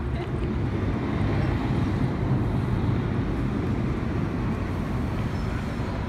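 Steady outdoor city street noise, with traffic heard as a low rumble.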